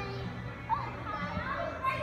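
Children playing: several young voices calling out and chattering over one another, with a short sharp sound about three-quarters of a second in.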